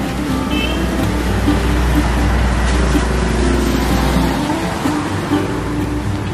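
Street traffic with a motorcycle riding past close by and away on a wet road; its low engine rumble drops off about four seconds in. Background music plays over it.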